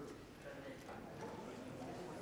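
Faint, indistinct chatter of several people, with a few scattered sharp clicks.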